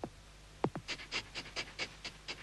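Cartoon sound effects for a computer-animated dog: two quick falling-pitch swoops, then a run of short, quick dog-like breaths, about five a second.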